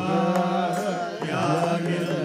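Carnatic devotional bhajan music: voices singing a gliding, ornamented melody over a steady harmonium drone, with light mridangam strokes.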